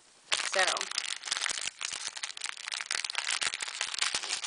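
Clear plastic bag crinkling as hands handle and open it, a dense run of crackles starting about a third of a second in.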